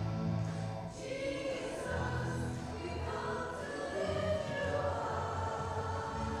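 Group singing of a worship song in church, with sustained low accompanying notes underneath.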